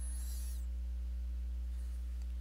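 Steady low electrical hum from the recording setup, with a faint, brief high hiss in the first half second.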